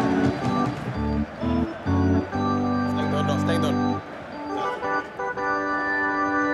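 Organ music: short stabbed chords repeated over the first couple of seconds, then a long held chord, then softer sustained chords.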